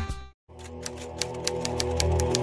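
Typewriter keystroke sound effect, a quick run of clicks about seven or eight a second, over a soft sustained music pad. Just before it, the preceding upbeat music fades out into a brief moment of silence.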